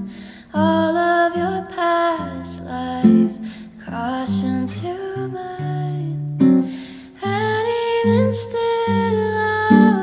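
A woman singing a slow song, accompanied by an acoustic guitar.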